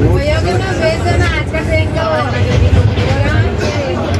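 Voices talking throughout over the steady low rumble of a train running on the tracks.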